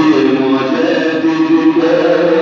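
A man's voice chanting melodically in long held notes, amplified through a microphone.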